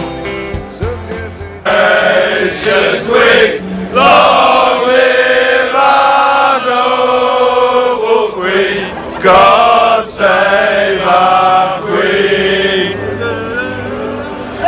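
A group of men singing loudly together in unison, a football fans' chant-style song. It starts abruptly about two seconds in, after a moment of recorded music.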